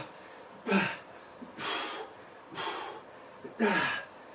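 A man's heavy breathing from exertion: four loud, hissy breaths about a second apart, the first and last with a little voice in them.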